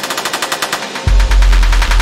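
Live-coded electronic music from TidalCycles: a rapid stream of stuttering, glitchy drum-sample clicks, with a deep bass coming in about halfway through.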